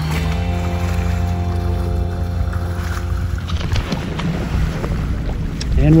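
Background music: a chord of held notes over a steady low bass, the held notes dropping out about three and a half seconds in.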